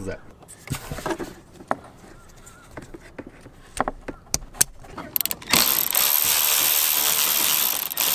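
Scattered light clicks and knocks of handling wires and parts, then, a little past halfway, a Milwaukee cordless electric ratchet running steadily for about three seconds as it drives a nut down on a battery terminal.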